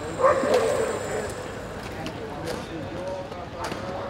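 Voices of people around an outdoor plaza, with a loud wavering voice-like sound about a quarter second in, two sharp knocks later on, and a short laugh near the end.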